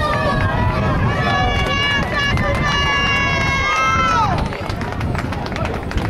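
A spectator yelling a long, drawn-out shout of encouragement to passing runners, held for about four seconds and falling off in pitch at the end, over a background of crowd noise.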